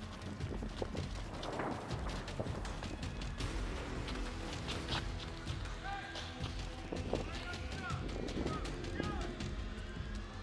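Footsteps walking quickly over wet pavement, a steady series of short steps, over a background music bed.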